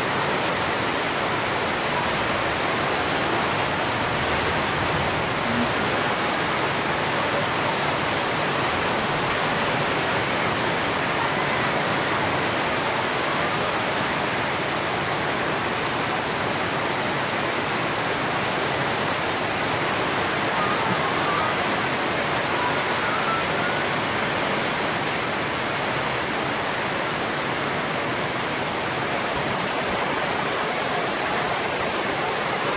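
Heavy tropical-storm rain falling steadily on trees, garden and roof, with runoff pouring off the roof's edge; a constant, even hiss with no let-up.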